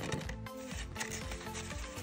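Soft background music with steady held notes, with a few light clicks and rustles from handling a ring binder's pages and cash envelopes.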